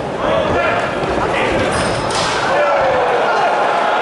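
Shouting voices in a boxing hall, with dull thuds from the ring as the fighters exchange blows. A surge of crowd noise comes in about halfway through, as a knockdown follows.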